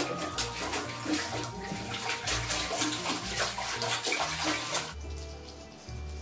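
Water splashing and sloshing in a toilet bowl as a small dog moves about inside it, over background music with a steady bass beat. The splashing stops suddenly about five seconds in.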